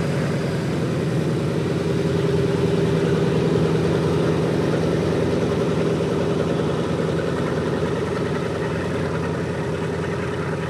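Boeing B-17G Flying Fortress's Wright R-1820 Cyclone nine-cylinder radial engines running at low power, a steady, loud drone that swells a little in the middle and eases slightly near the end.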